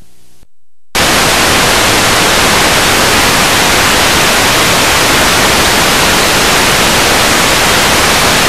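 Static hiss of video playback with no recorded signal, the sound that goes with TV snow. A quieter hiss with a faint low hum cuts out briefly, and about a second in a loud, steady hiss comes on abruptly.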